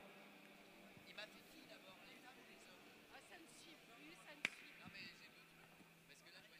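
Near silence with faint, distant voices murmuring and one sharp click about four and a half seconds in.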